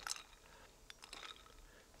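Faint, scattered clinks of ice cubes knocking against each other and the glass bowl, with light water sloshing, as poached eggs are moved around in ice water.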